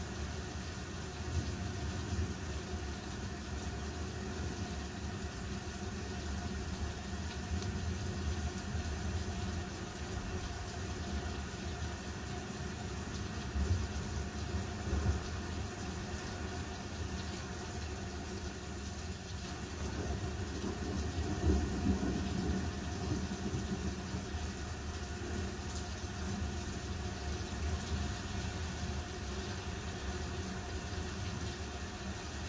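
A steady low rumbling drone with a constant hum over it, swelling slightly a couple of times.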